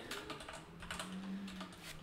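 Typing on a computer keyboard: a few separate keystrokes as a single word is typed out.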